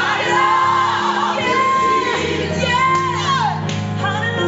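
Live gospel singing: a woman's lead voice holding long notes and sliding between them, with other singers, over sustained chords on a Nord Stage 2 electric keyboard.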